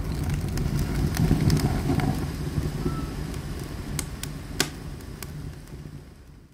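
Wood campfire burning: a low steady rush of flames with sharp crackles and pops of burning wood, the whole sound slowly fading away.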